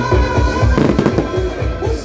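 Fireworks crackling: a dense run of small pops, thickest about a second in, over loud disco music with a steady beat.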